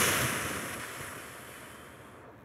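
A long exhale of breath into a clip-on microphone: a rush of breath noise that starts loud and fades away over about two seconds.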